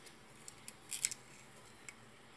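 Strip of staples being slid into the steel magazine of a Kangaro TS-610R gun tacker: a few light metallic clicks, the loudest cluster about a second in.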